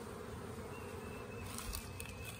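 Honey bees buzzing steadily in flight around a hive entrance.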